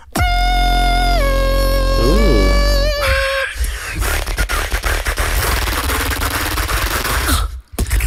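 Two beatboxers performing together into handheld microphones. A held, synth-like vocal tone sits over deep sub-bass and drops in pitch about a second in. From about three and a half seconds it turns into a dense, buzzing, rapid-fire texture, which cuts off just before the end.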